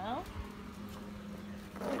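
Greenworks 19-inch battery-powered electric lawn mower running, a quiet, steady hum.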